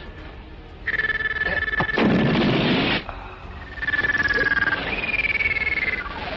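Film sound effect of an electronic, synthesized buzzing tone for a supernatural power being summoned. It starts about a second in, breaks into a loud noisy rush in the middle, then returns, sliding slightly lower in pitch.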